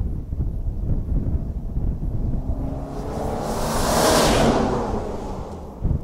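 An SUV driving past over grassland. Its engine and tyre noise build to a peak about four seconds in and then fade, over a steady low rumble.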